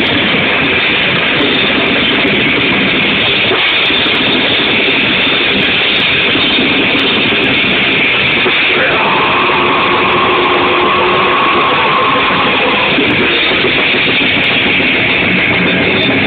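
Metalcore band playing: distorted electric guitars and drums in a dense, muddy wall of sound, with a held higher note coming in about nine seconds in.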